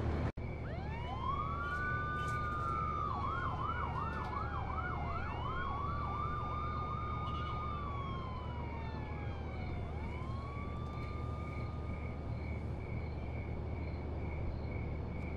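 Police sirens, two or more at once, with long wails that rise and fall slowly and a stretch of fast yelping sweeps, over a steady low hum; the sirens stop about two seconds before the end.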